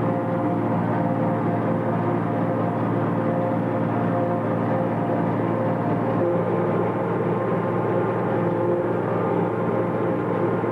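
A tractor pulling a New Holland pull-type forage harvester while it chops alfalfa haylage. The tractor engine and the chopper's cutterhead and blower make a steady drone with several held tones.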